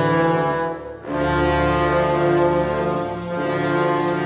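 Orchestral film score with brass to the fore, trombones and horns playing sustained chords. The held chord breaks off briefly about a second in, then a new chord swells in and is held.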